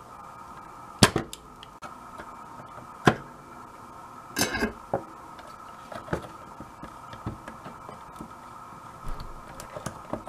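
A few sharp clicks and knocks from tools and fingers working on a car radio's circuit board while its soldered-on backlight bulbs are desoldered, the loudest about a second in, over a faint steady hum.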